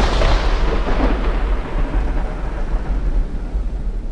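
Thunder sound effect for a logo sting: a long, loud rumble with heavy bass that begins to fade near the end.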